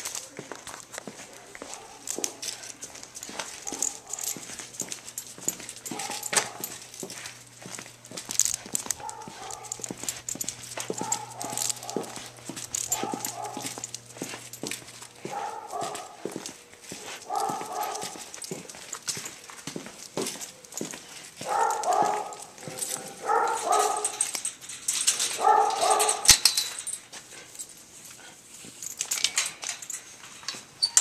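A dog giving short vocal calls, barks and whines, every second or two, louder and closer together in a run of three about two-thirds of the way through. Many small clicks and knocks run beneath them.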